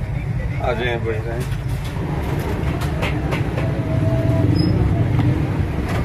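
Steady low rumble of background noise, with a voice speaking briefly about a second in.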